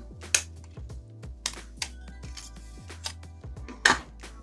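Several small, sharp plastic clicks and taps from the Pulsar X2V2 gaming mouse's plastic shell and inner parts as they are pried apart and handled. The loudest click comes about a third of a second in and another just before the end.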